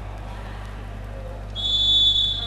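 Volleyball referee's whistle: one steady, high blast starting about one and a half seconds in, over a low hum. Sounded between rallies, it is the signal to serve.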